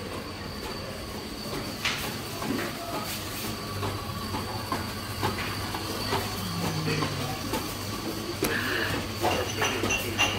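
Open restaurant kitchen noise: a steady low hum of equipment and ventilation, with scattered light clicks and clinks of kitchen work.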